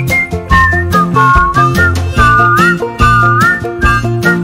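A tune whistled with sliding notes over backing music with a steady beat and bass line.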